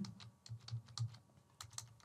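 Faint typing on a computer keyboard: a handful of irregular single keystrokes as a short word is typed.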